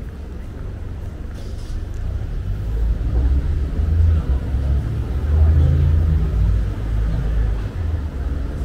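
Low rumble of road traffic from cars driving past on the street, building about two seconds in and loudest through the middle, with faint voices of people walking by.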